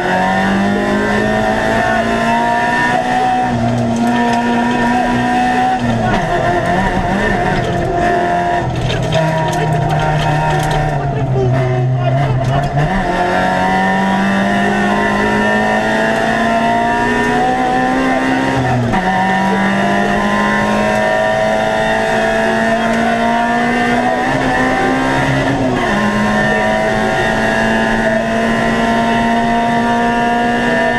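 Peugeot 206 GTi rally car's four-cylinder engine heard from inside the cockpit at speed on a stage, its pitch climbing slowly through each gear and dropping sharply at gear changes a third of the way in, about two-thirds through and near the end.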